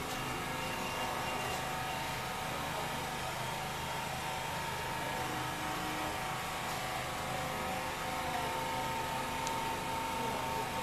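A steady mechanical hum with several constant tones in it, unchanging throughout.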